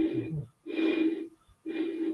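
Air blown across the mouth of a bottle partly filled with water: three short breathy whistles, each holding one steady low tone as the air inside the bottle resonates.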